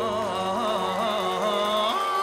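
Music: a singer's wordless vocal run, wavering with vibrato over light accompaniment, with little bass underneath.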